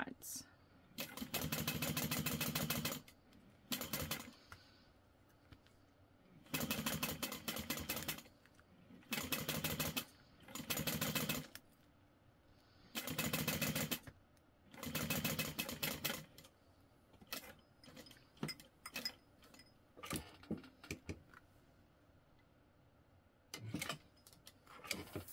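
Juki industrial sewing machine topstitching through layered vinyl in six short runs of one to two seconds, stopping and starting as the work is guided along the edge. After the last run come scattered light clicks and handling noises.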